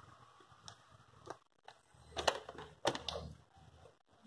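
A few sharp handling clicks and knocks, about four, the loudest two a little over two and three seconds in: a TV's power cable being handled and its plug pushed into a wall socket.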